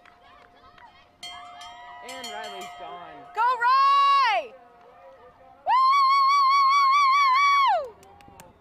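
Spectators cheering with loud, high drawn-out yells: a short one that rises and falls about three and a half seconds in, then a longer held one of about two seconds near the end, with quieter calls in between.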